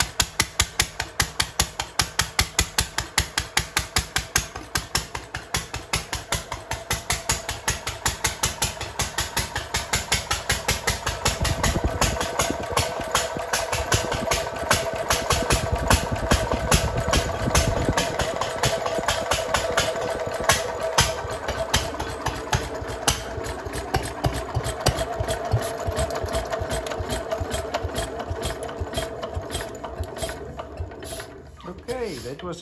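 1957 Lister D single-cylinder engine running on its own, each firing stroke a separate beat. The beats come about three a second at first, then quicken and run together into a steadier run from about a third of the way in: the restored engine is firing and running well.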